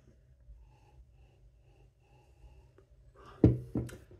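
Mostly quiet room tone as a person sniffs a glass of perry, then a short, sudden breath or vocal sound about three and a half seconds in.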